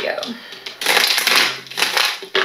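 A tarot deck being shuffled by hand: a run of dry, rustling card noise that starts about a second in.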